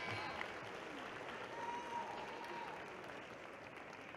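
Arena crowd applauding, the applause slowly dying away.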